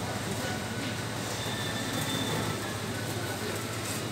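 Steady hum of a supermarket's refrigerated freezer cases and store ventilation, with faint voices of other shoppers in the background.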